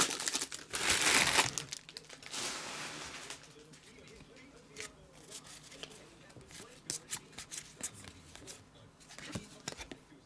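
Foil trading-card pack being torn open and crinkled, loudest in the first three seconds, then cards handled and flipped through with a scatter of small clicks and snaps.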